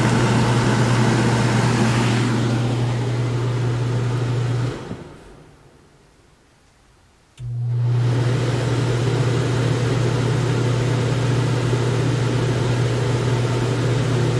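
Roadtrek's Cool Cat air-conditioner fan running with a loud, steady hum. Midway it winds down to near silence, then starts again abruptly a few seconds later and runs steadily as it is switched to high fan speed.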